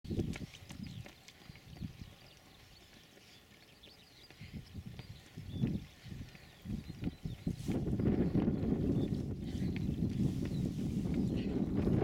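Wind buffeting an outdoor microphone: a rough, low rumble that comes in gusts at first, then turns steady and louder about halfway through.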